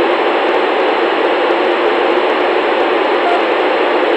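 Steady FM hiss from a Yaesu FT-897D receiver with its squelch open, between the ISS's downlink transmissions. No signal is coming down from the station while the school's next question goes up on the uplink.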